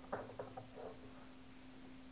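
Faint light clicks and rustles of a loom hook and rubber bands against the plastic pegs of a Rainbow Loom, mostly in the first second, over a steady low hum.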